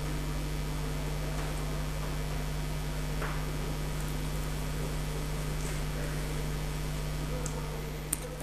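Steady room tone: a constant low electrical hum under an even hiss, with a few faint ticks.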